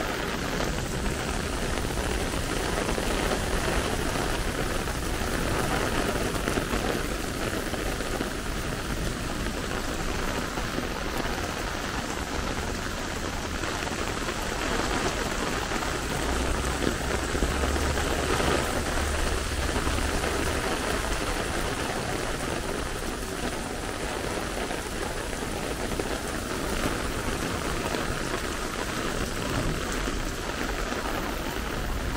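Heavy rain falling steadily on wet paving stones and umbrellas, a dense even hiss with a low rumble a little past halfway.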